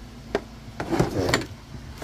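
Handling noise from the scan tool's OBD cable and its plastic case: a sharp click about a third of a second in, then a cluster of clicks and rustling around the middle.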